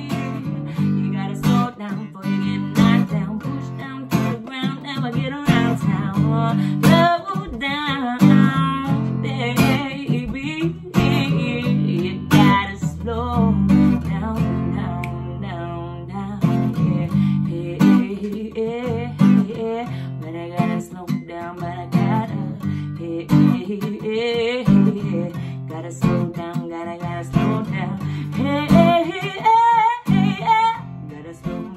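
Steel-string acoustic guitar strummed in a steady rhythm, with a woman singing over it.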